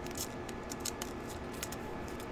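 Trading cards being flipped through by hand: a quick, irregular run of crisp snaps and slides as each card is pushed off the stack.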